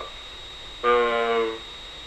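A male caller's voice over a telephone line holding one long, level hesitation vowel for under a second, with low line hiss either side.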